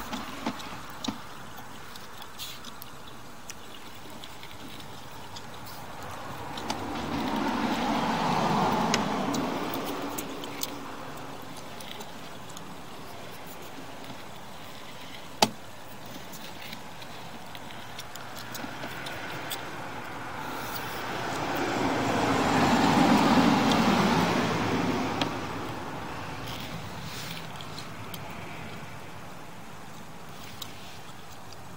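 Two cars pass on a nearby street, each swelling up and fading away over several seconds, over a steady background hiss. Scattered light clicks and one sharp click about halfway through.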